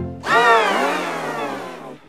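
Pitch-shifted, layered 'G Major' meme audio: a sound stacked into a distorted chord, sliding down in pitch over about a second and a half before cutting off near the end.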